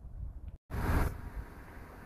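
Outdoor background noise with a low rumble. The sound cuts out completely for a moment about half a second in, then comes back with a brief rush of noise that settles down.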